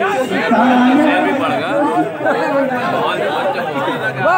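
Several voices talking over one another, a babble of chatter.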